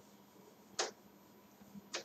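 Whiteboard eraser wiping across the board: two brief, sharp swishes about a second apart over quiet room tone.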